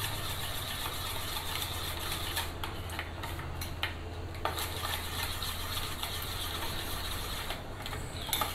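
Steel spoon stirring melted soap base in a small steel pot set in a water bath, with faint scrapes and a few light clinks against the pot. A steady low hum runs underneath.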